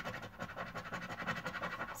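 A coin scraping the coating off a paper lottery scratch card in quick, short strokes.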